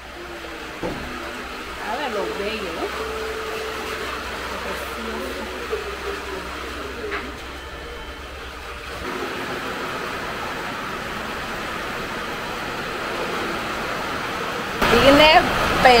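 Steady hiss of rain falling outside, with faint voices in the background during the first half. A woman starts talking near the end.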